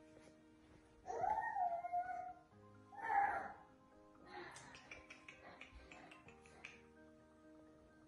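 Soft background music with steady held tones. A louder wavering cry rises and falls about a second in, and a shorter one follows near three seconds. A patch of short scratchy sounds runs from about four to seven seconds.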